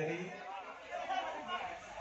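Low-level chatter of people's voices in the background, with no music playing.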